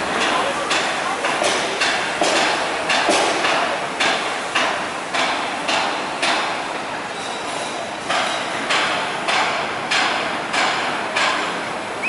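Hammer blows on metal, repeated steadily at a little under two strikes a second, each with a short ringing tail. There is a pause of about a second and a half a little past halfway before the strikes resume.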